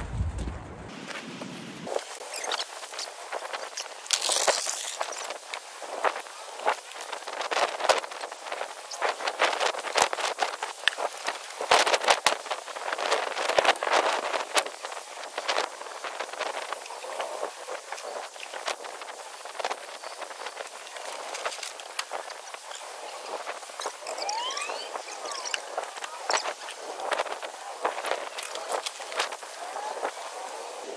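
Scrap and rubbish being gathered up: irregular clatter, knocks and rustling throughout, thin and with no low end.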